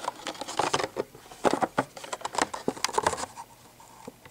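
Clear plastic blister packaging of a carded die-cast toy car crackling and clicking as it is handled, an irregular run of small clicks that dies away about three seconds in.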